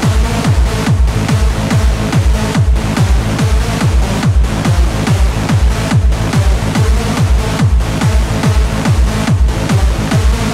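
Hardstyle dance music with a heavy kick drum beating about two and a half times a second, each kick dropping in pitch, under dense synth chords.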